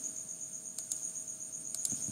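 Steady high-pitched chirring of crickets, with a few sharp clicks about a second in and again near the end.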